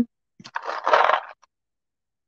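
A paper bowl of painted beads slid across a paper-covered table, a scraping rustle with the beads rattling, about a second long, starting with a couple of clicks.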